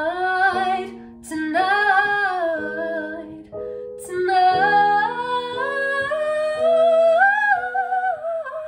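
Female voice singing long, sliding notes, with two short pauses, over held chords played on an electronic keyboard.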